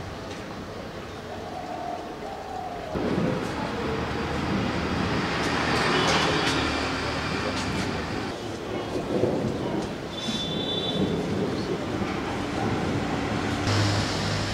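Street traffic: a vehicle passes by, its rumble swelling about three seconds in and fading away a few seconds later.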